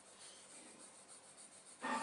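Graphite pencil shading on paper: the lead scratches faintly back and forth as a square of a value scale is worked darker.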